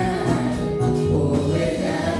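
Gospel worship song: several voices singing into microphones, led by women among the congregation, over steady instrumental accompaniment with a strong bass.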